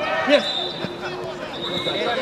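Football kicked and bouncing on an artificial-turf minifootball pitch, a few sharp thuds, the loudest about a third of a second in, with players shouting over them.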